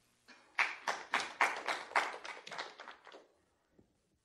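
A few people clapping briefly in applause at the end of a talk: about a dozen distinct claps that die away after about three seconds.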